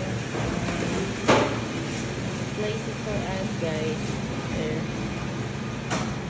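Steady machine hum in a shop, with faint talk in the background and one sharp knock about a second in.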